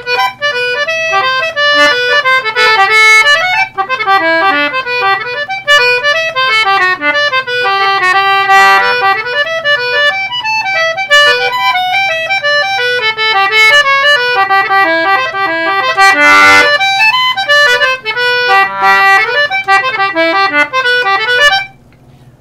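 A 1923 Wheatstone Aeola tenor-treble concertina (56-key, metal-ended) being played: a continuous tune of quick notes and chords moving up and down the range, with one heavy chord about sixteen seconds in. The playing stops abruptly just before the end.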